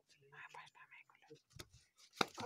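Near silence, with faint voices about half a second in and a few soft clicks.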